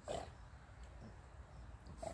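A dog swimming with a retrieving dummy in its mouth, heard faintly: one short breathy sound just after the start over a low steady rumble.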